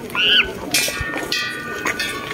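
Small hanging temple bells along a walkway railing being struck: two strikes, one a little before a second in and one about a second and a half in, each leaving steady ringing tones. A brief voice sounds at the very start.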